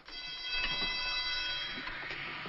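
Sound-stage warning buzzer giving one steady buzz for nearly two seconds, the signal for quiet before a take is filmed.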